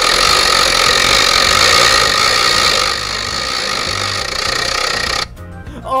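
A loud, steady hissing noise over background music, cutting off suddenly about five seconds in.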